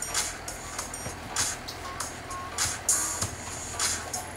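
Music with a steady beat over a low bass line.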